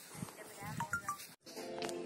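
Faint voices, cut off abruptly a little past halfway by a moment of dead silence. Background music begins near the end.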